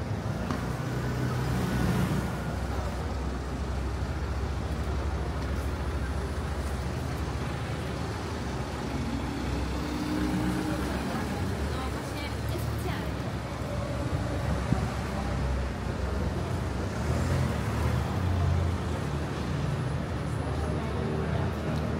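City street ambience: steady low-speed motor traffic on a narrow street, with passers-by talking in the background. A single sharp knock about fifteen seconds in.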